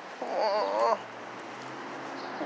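A short vocal call, under a second long and about a quarter of a second in, its pitch wavering up and down.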